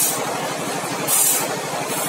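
Automatic band-saw blade sharpener running, its grinding wheel biting into one saw tooth after another over the steady hum of the machine. There is a short, high-pitched grind at the start and another about a second in.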